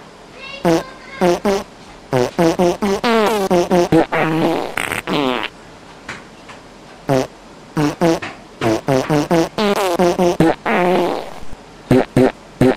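A melody performed in fart-like sounds: a run of short, pitched, buzzing notes, with a pause of over a second midway before the tune resumes.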